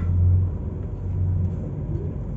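DAF truck's diesel engine heard from inside the cab, a low drone as the loaded truck rolls slowly; it is strongest for the first second and a half, then eases a little.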